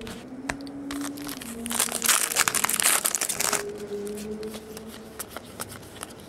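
Foil trading-card pack wrapper crinkling loudly for about two seconds as it is torn open. Small clicks of card and wrapper handling come before and after it.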